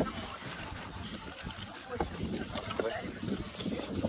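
Wind buffeting the microphone in an uneven low rumble, with a few light clicks about halfway through.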